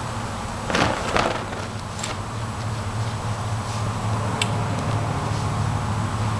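Two quick whooshes of a colour guard flag's fabric swung through the air, about a second in, over a steady low hum.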